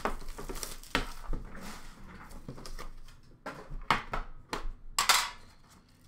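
A metal Upper Deck Series Two card tin being handled and opened: a handful of sharp metallic clanks and knocks, the loudest near the end, with light rustling in between.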